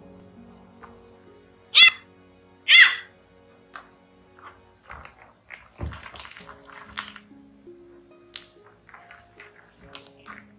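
Bulldog puppy giving two short, high yips about a second apart near the start, then scuffling and a soft thump on the mat, with a few fainter little squeaks later.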